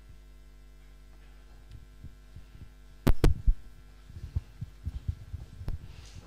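Steady electrical mains hum in a PA or recording chain, broken about halfway by a sharp double knock, the loudest sound, followed by a run of soft, irregular low thumps.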